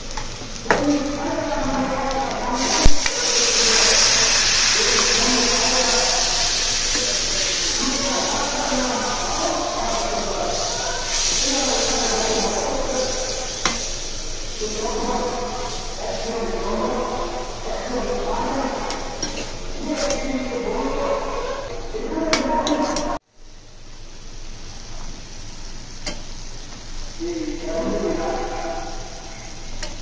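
Onions and spice masala sizzling in a hot metal pot while a metal spatula stirs and scrapes through them. A single sharp knock comes about three seconds in. Voices talk in the background throughout.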